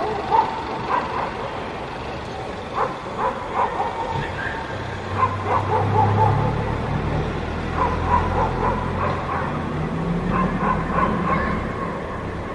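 Dogs barking in short, repeated bursts. A vehicle's low engine rumble passes through the middle.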